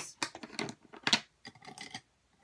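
A quick run of light clicks and taps as makeup brushes and cases are rummaged through, with one louder click about a second in.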